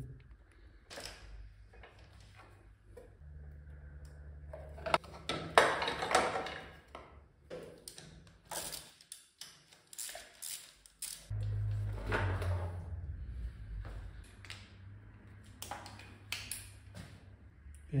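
Scattered metallic clicks and knocks of hand tools and engine parts being handled as a scooter's fuel-injection throttle body is unbolted and pulled off. They are busiest about five to eleven seconds in. A low hum comes and goes underneath.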